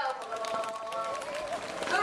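A woman singing into a microphone over a loudspeaker, holding long notes.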